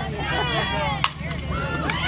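A softball bat striking a pitched ball with a single sharp crack about a second in, over crowd chatter. A lighter click follows near the end.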